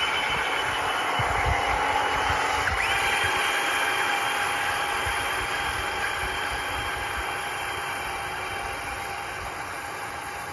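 Spin Master All-Terrain Batmobile RC truck's electric drive motors whining as its tyres churn through pond water. The whine rises in pitch about three seconds in, and the sound slowly fades as the truck moves away.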